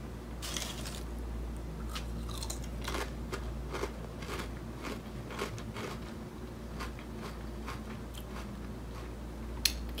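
Ruffles ridged potato chips being bitten and chewed: irregular crisp crunches throughout.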